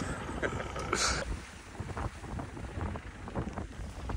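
Open-top 4x4 safari jeep driving on a rough dirt track: an uneven low engine and road rumble with wind buffeting the microphone, and a brief hiss about a second in.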